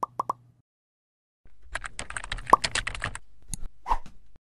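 Sound effects of an animated logo outro: three short pops at the start, then a quick run of typing-like clicks with a few pops mixed in as the web address is written out on screen.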